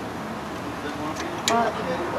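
Thin-sliced bulgogi beef sizzling on a gas grill, with metal tongs clicking against the grill grate a couple of times about a second in.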